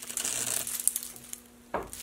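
A handful of fine, dry ash shavings from an adze crinkling and rustling as they are squeezed and let fall from a hand. The crackle fades out about two-thirds of the way through.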